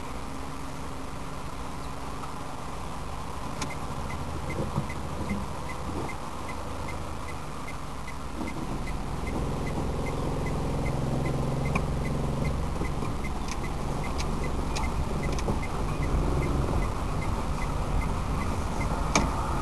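Car engine and road noise heard inside the cabin, growing louder from about halfway as the car speeds up. A turn-signal indicator ticks steadily at about two ticks a second from a few seconds in.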